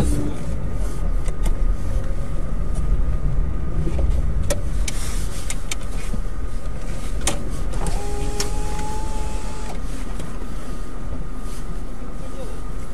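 Steady low engine and road rumble inside a moving car at night, with scattered light clicks. About eight seconds in, a flat tone sounds for about two seconds.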